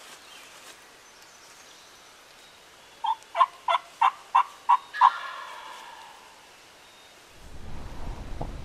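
A run of seven short, evenly spaced turkey yelps, about three a second, the last one drawn out and trailing off. Near the end comes a low rumble of the camera being handled.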